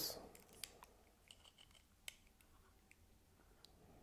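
Near silence with a few faint, scattered clicks and light scrapes as a Mitutoyo digital caliper's jaws are slid and re-seated on a small metal test part.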